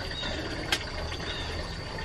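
Quiet steady background noise with a low hum, and a single faint click about two-thirds of a second in.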